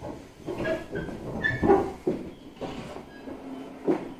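JR 701-series electric train car coming to a stop: irregular clunks and knocks from the car, with a few short squeals as the brakes bring it to a halt.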